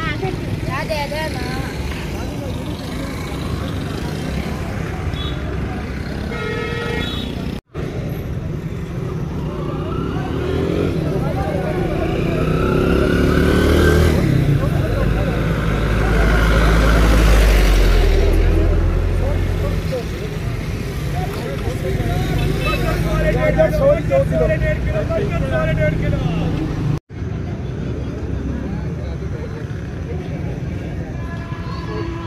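Roadside traffic with voices in the background; about halfway through, a truck passes close by, its engine rumble growing loud and then fading away.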